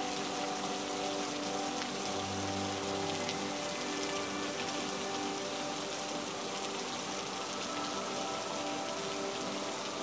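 Steady rain falling, a constant hiss with scattered light ticks of drops.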